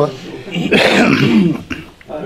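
A man coughs into his hand, once, for about a second, starting about half a second in.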